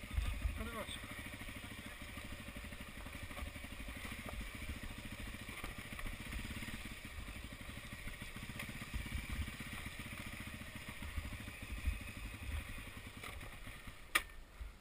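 Dirt bike engine running at low revs with a steady, even firing beat as it is ridden slowly over rough ground.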